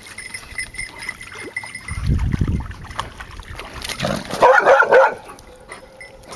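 A dog barking in a short burst about four to five seconds in, over the sound of a dog wading through shallow stream water.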